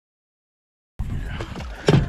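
About a second of dead silence, then outdoor noise on a bass boat's deck with a few light clicks and a loud knock near the end.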